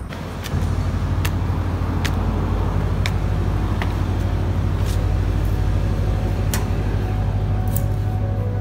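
Footsteps on a hard, polished tile floor, a sharp click about once a second, over a loud steady low hum.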